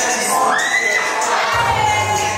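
Onlookers cheering and shouting over a dance track, with one high rising whoop about half a second in. A deep bass beat comes in near the end.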